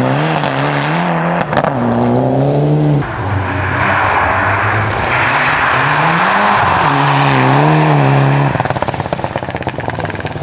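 Mitsubishi Lancer Evolution rally car's turbocharged four-cylinder engine revving hard, its pitch climbing and dropping again and again through gear changes and lifts through the bends, with a hiss of tyres on slush. Near the end the engine note falls away into a fainter run of rapid crackles.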